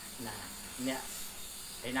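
A man's voice in a gap between phrases: a couple of brief vocal sounds over a steady high hiss.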